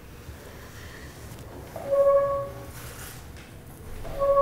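A single steady high note, sung or played, held for under a second about two seconds in.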